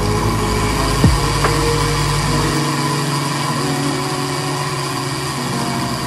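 Countertop blender motor running steadily, its blades grinding shallots, chilies, garlic, cilantro and curry paste into a thick paste for khao soi. The deep rumble drops away about halfway through while the higher motor sound carries on.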